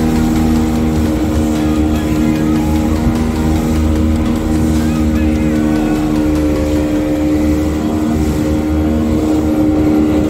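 Small boat's motor running steadily at speed, one unchanging pitch, with water rushing and splashing along the hull.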